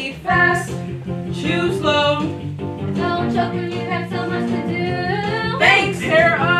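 Young female voices singing a musical-theatre song over instrumental accompaniment, the melody moving in short phrases above sustained chords.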